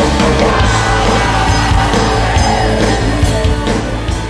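Loud rock music from a band, with heavy bass and a steady drum beat.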